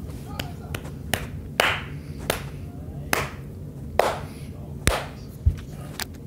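A series of about nine sharp, clap-like strikes, spaced unevenly a little under a second apart.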